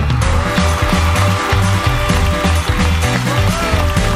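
Loud rock-style background music with a pulsing low beat under long held lead notes, one of which bends upward about three seconds in.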